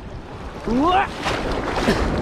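Sea water sloshing and splashing around a camera held right at the water's surface, with wind on the microphone. About halfway in, a short rising vocal sound.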